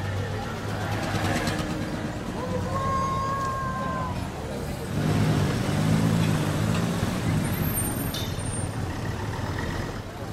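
City street traffic: a vehicle engine running low, swelling louder from about five seconds in. There is a brief high squeal about three seconds in, with people talking in the background.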